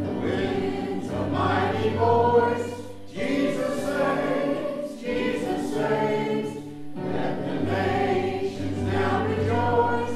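Church choir of mixed men's and women's voices singing a hymn, in phrases of a few seconds with short breaks between them.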